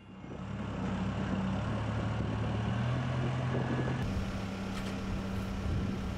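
Telehandler's diesel engine running steadily, its pitch shifting about four seconds in.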